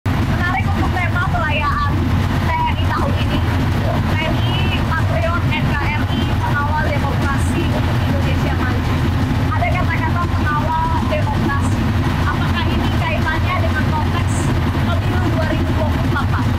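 A woman talking over a steady low engine rumble, heard inside the compartment of a military vehicle.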